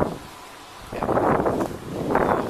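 Wind buffeting a body-worn camera's microphone in gusts, with a short lull before a second gust about a second in.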